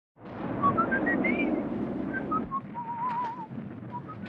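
A person whistling a short tune: a run of rising notes ending in an upward slide, then a few falling notes and a held, wavering note. A low background noise under the first half drops away about halfway through.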